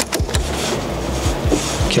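Honda Motocompacto's folding handlebar stem latching into its upright position with a short click near the start, over background music with a steady beat.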